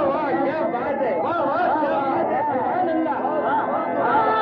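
A crowd of many voices calling out together in acclaim, over faint held music.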